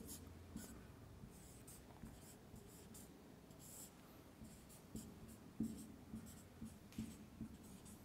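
Marker pen writing on a whiteboard: faint, irregular short strokes, coming more often in the second half.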